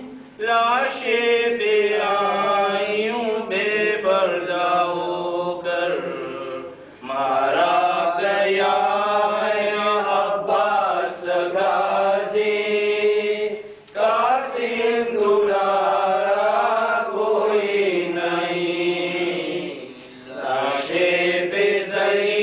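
A Muharram lament (noha) chanted in long melodic phrases of about six seconds each, with brief pauses between them.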